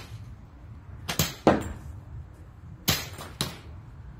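Dry fallen twigs snapping and crackling as they are gathered off the ground by hand: four short, sharp cracks in two close pairs.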